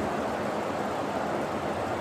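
Steady, even hiss of room noise picked up by a lapel microphone, with no other sound standing out.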